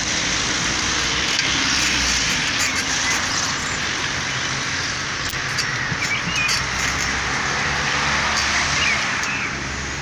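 Steady road traffic noise from cars on a town street, with a low rumble underneath, and a few faint high chirps about six and nine seconds in.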